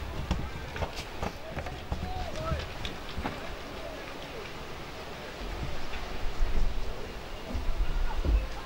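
Distant calling and shouting from players and onlookers across an open football ground, with no clear words. Wind buffets the microphone in low gusts in the second half.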